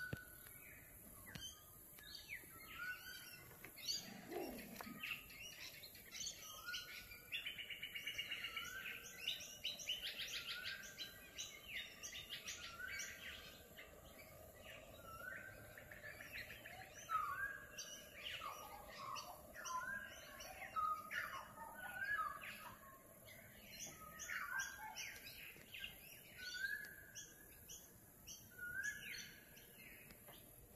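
Birds chirping and calling, with short calls repeated every second or two and a few rapid trills.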